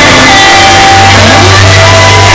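Live electric blues-rock band playing: electric guitars, bass and drums, recorded very loud from within the audience. A low bass note comes in and is held from about a second in.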